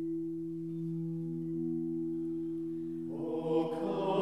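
Low sustained chord held steady on the church organ, as an introduction, with singers' voices coming in about three seconds in.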